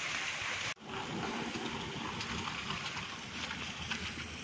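Steady rain falling on a wet road and grass, an even hiss, broken by a brief dropout just under a second in.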